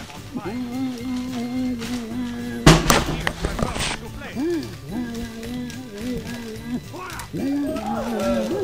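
Paper crinkling loudly as wrapping paper is pulled out of a gift bag, a sudden crackling about three seconds in. A long held musical note sounds before and after it.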